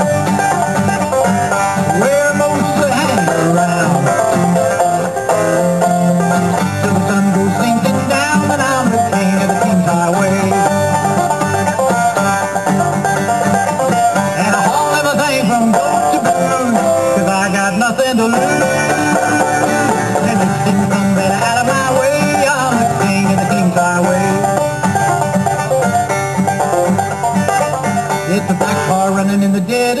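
Banjo and guitar playing a song together, continuous and steady throughout.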